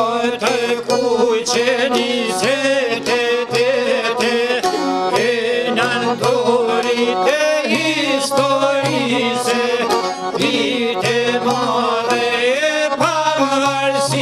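Live Albanian folk ensemble music: violin and accordion over plucked long-necked lutes, with a frame drum keeping a steady beat and a man singing.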